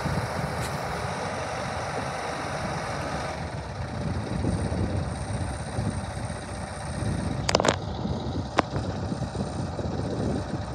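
An engine idling with a steady low rumble. A few sharp clicks come about three quarters of the way through.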